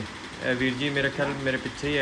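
A man's voice talking, with no other distinct sound standing out.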